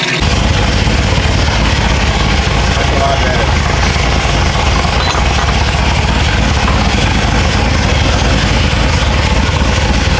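Corvette C7 Z06's supercharged 6.2-litre V8 idling, a steady low rumble that starts suddenly.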